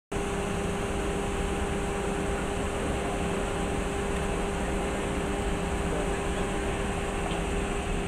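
Steady mechanical hum with a constant faint whine from a standing passenger train, like its ventilation and air-conditioning units running.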